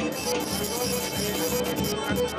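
Live Serbian folk dance music played by a small band with violin, at a steady beat.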